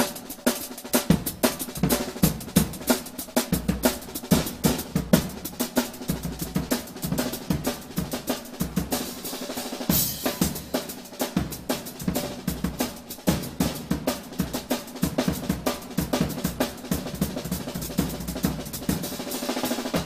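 Drum kit played fast, led by a 13-inch Sonor Pure Canadian maple snare drum: dense, rapid snare strokes and rolls over bass drum hits, with a bright cymbal wash about halfway through.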